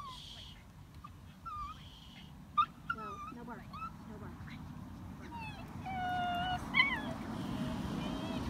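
A small dog whining and squeaking in short high rising and falling notes throughout, with one longer held whine a little past halfway. A low rumble grows louder in the second half.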